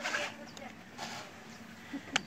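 Nylon webbing of a weight belt rasping as it is drawn through its metal buckle and cinched tight, in two short bursts: one at the start and a weaker one about a second in.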